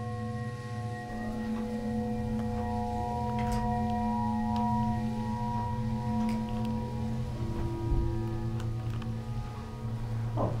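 Ambient soundtrack of several steady ringing tones layered over a low hum, with tones fading in and out and scattered short clicks and chirps. A low thump comes about eight seconds in.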